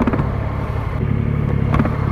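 Motorcycle engine running steadily at low revs in slow city traffic, with two brief clicks, one just after the start and one near the end.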